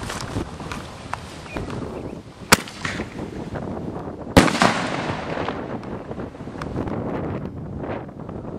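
Aerial salute shell fired from a mortar tube: a sharp crack about two and a half seconds in as the lift charge launches it, then about two seconds later the salute bursts with a heavy bang that trails off in echo.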